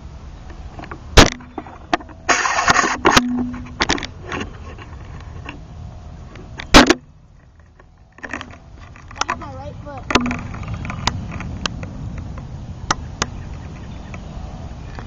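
A boy crying and whimpering in short wordless bursts after a scooter crash, with two loud sharp knocks, one about a second in and one near the middle.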